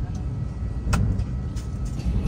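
Steady low rumble inside an airliner cabin parked at the stand, with one sharp click about halfway through.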